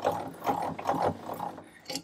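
Traverse handwheel of a 7.5 cm le.IG 18 infantry gun being cranked, turning the screw on the axle that swings the gun and trail sideways. The result is a mechanical whirring that fades out near the end.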